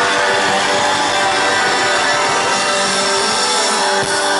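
Live country-rock band playing loudly: electric guitars and bass over drums, an instrumental stretch with held notes ringing and no singing.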